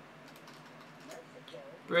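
Faint, scattered clicking of computer keyboard keys being typed; a man's voice begins at the very end.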